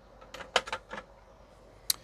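Small glass paint bottles clicking against each other and against an acrylic rack as one is set back and another picked up. There is a loose cluster of light clicks about half a second in, then one sharp click just before the end.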